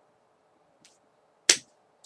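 Near silence with a faint hiss, broken by one short, sharp click about one and a half seconds in.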